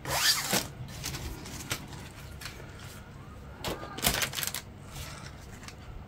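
Plastic model-kit sprues being picked up and moved about by hand. There are two short bursts of plastic rustling and scraping, one at the start and one about four seconds in, with quieter handling noise between.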